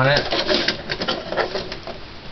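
Release catch on the side of a Dell Optiplex GX520 desktop case being pushed, with a run of small irregular clicks and rattles from the case cover.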